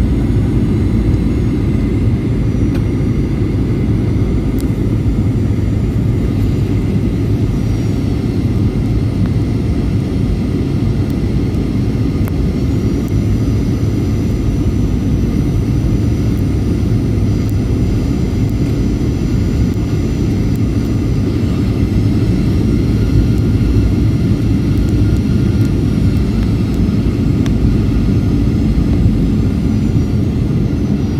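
Airliner cabin noise on final approach: a steady deep rumble of engines and airflow, with faint high engine whines that rise in pitch about twelve seconds in and shift again a little past twenty seconds in.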